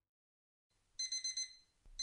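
Silence, then about a second in an electronic alarm clock beeping: a quick group of about four high beeps, a short pause, and the next group starting.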